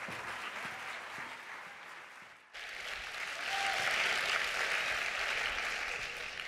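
Audience applauding. The applause breaks off sharply about halfway through, then comes back louder.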